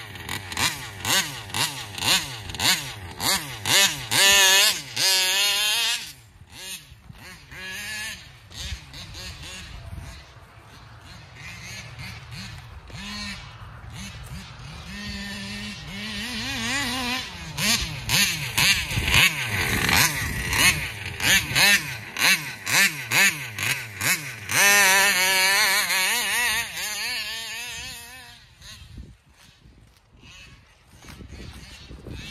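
Small two-stroke engine of a gas-powered large-scale RC car revving, its pitch sweeping up and down with the throttle in quick repeated blips. It is loud in the first few seconds, quieter for a stretch, loud again through the second half, and drops away near the end.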